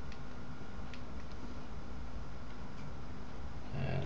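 Steady room tone with a low electrical hum from the microphone, broken by a few faint clicks about a second in.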